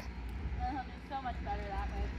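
Faint, quiet talking in short phrases over a steady low rumble; no distinct non-speech event stands out.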